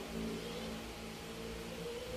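A steady, low motor hum with several held tones under a light hiss, like an engine or motor running in the background.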